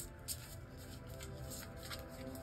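A tarot deck being shuffled and handled by hand, a few soft card slaps and flicks, over quiet background music.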